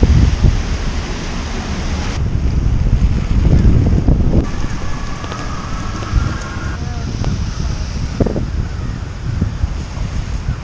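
Gusty wind buffeting the microphone: a loud, rough low rumble that surges and eases.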